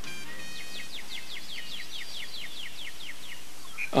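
A bird singing a fast series of short, repeated down-slurred whistles, about five a second, which stop shortly before the end.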